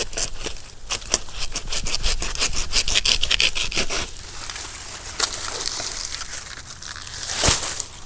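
Handsaw cutting through a banana plant's fibrous, watery pseudostem close to the ground, in rapid back-and-forth rasping strokes. The strokes come thick and fast for about four seconds, then slow and thin out, with a brief louder burst near the end.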